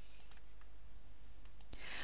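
Low steady background hiss with a few faint, scattered clicks.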